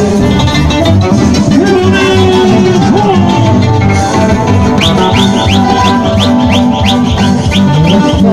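A live Andean folk band playing loudly: acoustic guitars strummed over a steady beat. A run of quick, high, rising notes repeats through the second half.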